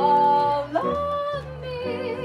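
A female jazz vocalist sings a held note, slides up to a higher sustained note just under a second in, then moves to a note with vibrato. She is accompanied by an archtop electric guitar and a plucked upright bass.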